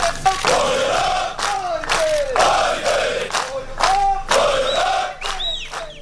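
Massed soldiers in formation shouting a chant in unison, a military battle cry, with sharp hits about once a second.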